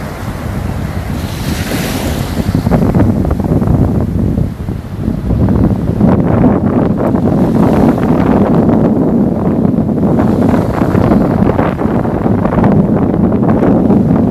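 Wind buffeting the microphone in a loud, ragged low rumble, over the wash of small surf breaking on the shore. The buffeting gets louder a few seconds in.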